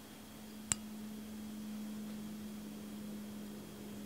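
Faint steady low hum with a single light clink about three-quarters of a second in, from the ceramic saucer being handled as it is turned slowly.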